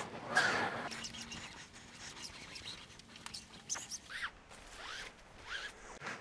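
Thin static rappel cord being hauled hand over hand, sliding through the hands and through a screw link overhead to pull the rope down: a run of faint, irregular rustling swishes, the strongest just at the start.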